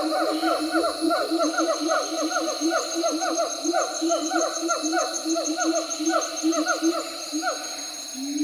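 Monkeys calling in a rapid run of short, falling hoots, about five a second, that thins out and stops near the end. A steady high whine and a fast high ticking run behind them.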